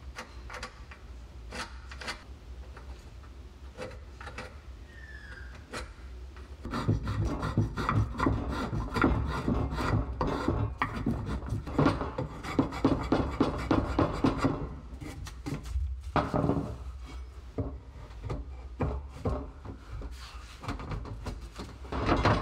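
Spokeshave shaving a laminated wooden axe handle held in a vise. The first few seconds hold only light scratches and taps. About seven seconds in a rapid run of scraping cutting strokes starts, pauses briefly about two-thirds of the way through, then goes on.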